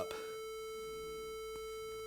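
A 440 Hz square wave from a Max MSP rect~ oscillator, playing as one steady tone rich in overtones.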